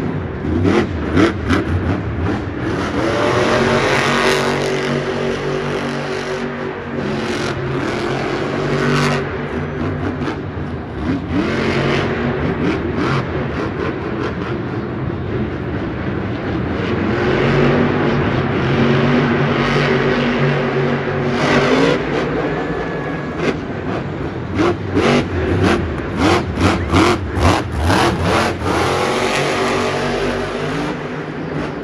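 Grave Digger monster truck's supercharged methanol big-block engine revving up and dropping back again and again as the truck is thrown around. Near the end comes a quick run of short, sharp bursts.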